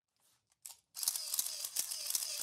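Camera shutter sounds: a brief click a little over half a second in, then from about a second a steady hiss with a few faint clicks.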